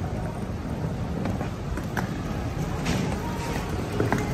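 Small wheels of a rolling suitcase running over concrete pavement: a steady low rumble with a few faint clicks.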